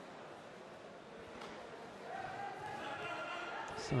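Faint background of a large indoor sports hall with distant, indistinct voices that grow a little louder about halfway through.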